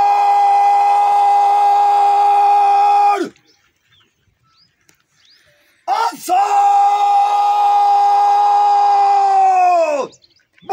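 A guard-of-honour commander shouting long drawn-out parade commands. There are two calls, each held at one high pitch for about four seconds. The first ends about three seconds in; the second starts about six seconds in and slides down in pitch as it ends.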